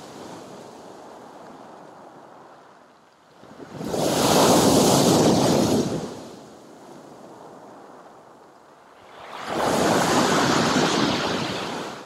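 Sea waves breaking on a pebble beach and against a concrete pier footing. Two big breakers crash, about four seconds in and again near ten seconds, with a quieter wash of surf between them.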